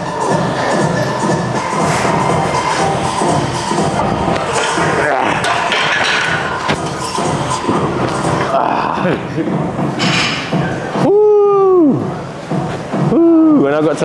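Background music under men's voices shouting during a barbell bench press set. About eleven seconds in comes a loud, long, strained yell, rising and then falling in pitch, and a further burst of shouting follows just before the end.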